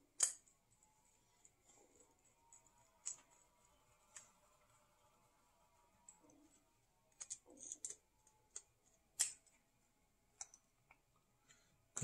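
Faint, scattered clicks and ticks of a screwdriver and small screw against a motorized ball valve's actuator bracket as the screw is set and driven, with a few clicks close together around seven to eight seconds in.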